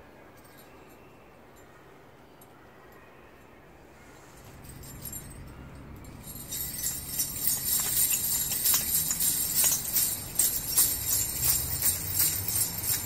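Jingle bells ringing in a steady, dense jingle that starts loud about six seconds in, over a low hum that swells a little before it. The first few seconds are quiet, with only faint ticks.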